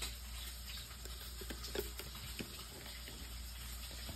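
Faint handling sounds: a few soft clicks and rustles as a folded paper hang tag is opened by hand, over a low steady background hum.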